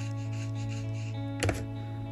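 Background guitar music with steady held notes, under the soft rubbing of a watercolour brush stroking across paper. A single sharp click about one and a half seconds in is the loudest sound.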